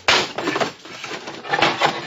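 Wooden crate being forced open, its wood creaking and splintering as the lid is prised up, as a radio-drama sound effect. The noise starts suddenly and comes again, louder, near the end.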